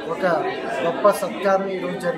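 Speech only: a man talking in Telugu, with the reverberation of a large hall.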